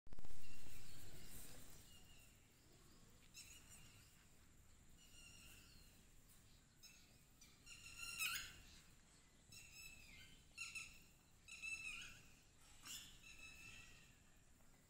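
Birds calling in short, repeated, pitched calls about once a second or two, the strongest about eight seconds in. A loud rush of noise at the very start fades away over about two seconds.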